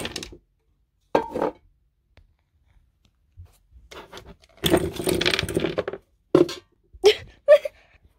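Small novelty erasers clattering and rattling in a container as they are rummaged through by hand, in several short noisy bursts with a longer one midway and a few sharp clicks near the end.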